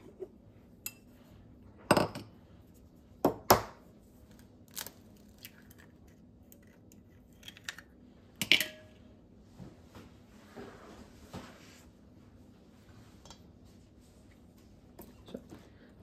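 An egg cracked on a glass mixing bowl, with kitchen utensils and bowls clinking: a few sharp, separate knocks and clicks spread over the seconds, the loudest about two, three and a half and eight and a half seconds in.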